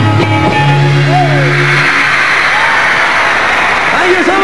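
A live rock band's closing chord on electric guitars and drums rings out and stops about two seconds in. A large audience's screaming and cheering swells up over it and carries on, with single high screams rising out of the crowd.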